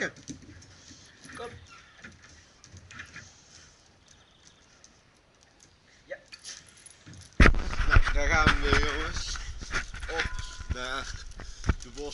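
Faint clinks of a dog's chain collar and lead as the lead is clipped on. About seven seconds in, a sudden loud rumble of the camera being handled and picked up begins.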